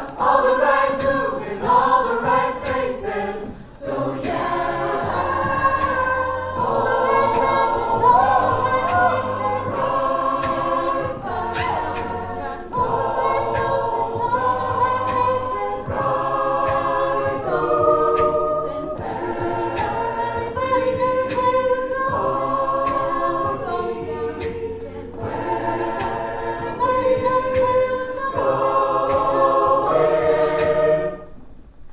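Large mixed-voice a cappella group singing in stacked harmony over a sung bass line, with sharp percussive sounds keeping a steady beat.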